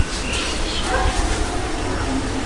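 A few short yips from a dog, over a steady rushing background noise.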